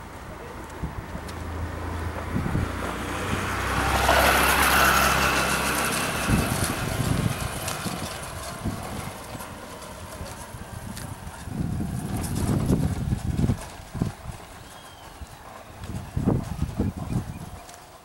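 A motor vehicle passing on a cobblestone street, its engine and tyre noise swelling to a peak about four to five seconds in and then fading. Shorter low rumbles follow near the middle and near the end.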